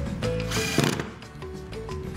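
A cordless drill-driver runs in one short burst about half a second in, driving a wood screw into a pine board, over background music with held notes.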